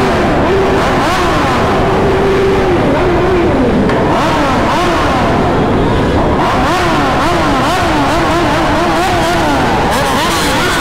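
A pack of sport motorcycles rolling slowly through a concrete underpass, several riders blipping their throttles so that engine pitches repeatedly rise and fall over a steady low rumble. The revving grows busier about two-thirds of the way in.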